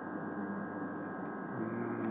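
A steady low electrical-sounding hum of several held tones. Near the end a man's voice comes in with a held hum on one pitch.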